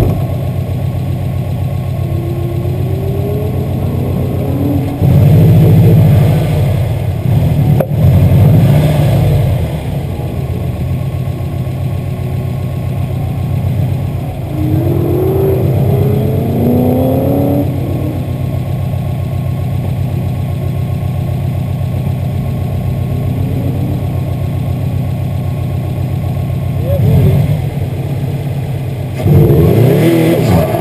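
Car engines revving on an autocross course, heard from the sidelines over a steady low rumble: several rising revs, with louder bursts about five to nine seconds in and again near the end.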